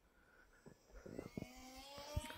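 Faint whine of the UMX Twin Otter model plane's twin electric motors in flight, setting in about halfway through and rising gently in pitch and loudness as it comes closer. Near silence before it, with a few soft knocks.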